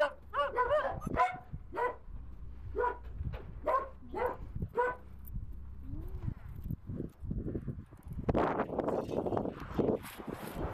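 A dog barking repeatedly, about eight short barks in the first five seconds. Near the end comes a louder rustling of the plastic shrink wrap on a siding coil being handled.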